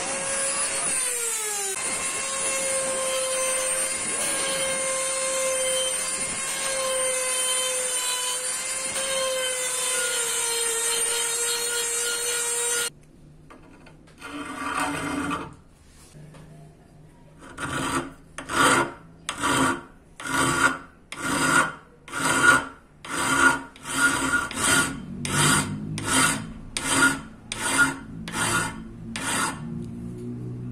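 Handheld rotary tool with a sanding drum grinding a 5160 steel karambit: a steady high whine that dips in pitch about a second in and stops about 13 seconds in. After a pause, a hand file rasps across the steel in regular strokes, quickening from under one and a half to about two strokes a second.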